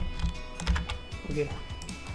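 A few separate computer keyboard keystrokes: sharp clicks near the start, a quick cluster just past halfway, and one more near the end.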